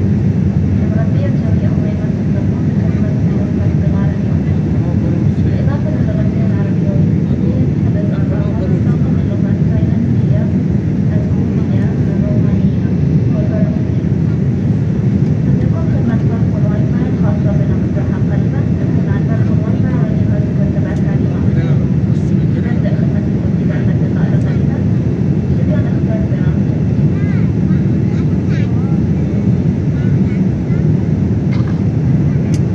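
Steady, loud low noise of a jet airliner's cabin in cruise flight: engine and airflow noise carried through the fuselage, with faint passenger voices murmuring underneath.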